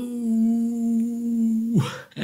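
A man's voice holding one long, steady 'ooo' vowel, the stretched end of a greeting read out from a chat message. Near the end the pitch drops and breaks into a short laugh.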